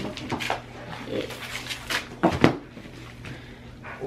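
Gift packaging, wrapping and plastic, rustling and crinkling as a small present is pulled open by hand, with one louder, sharper crackle a little after halfway.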